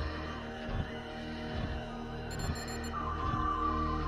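Tense sci-fi background music: sustained tones over a low drone with a soft low thud about every second. A brief high electronic warble sounds midway, and a rapid electronic beeping starts about three seconds in.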